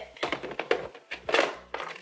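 A clear plastic storage box is handled and fitted into a drawer among other plastic containers. It makes a handful of light knocks and clatters spread over the two seconds.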